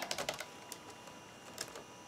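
Typing on an IBM ThinkPad 760XL's long-travel laptop keyboard: a quick run of key clicks in the first half second, then a few scattered clicks.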